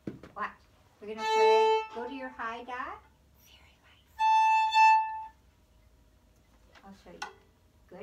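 A violin bowed in two held notes, each about a second long and some three seconds apart, the second higher than the first.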